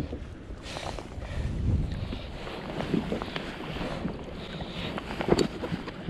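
A hooked Pacific halibut splashing at the surface beside a kayak. Water sloshes, and scattered knocks of handling come off the hull and gear.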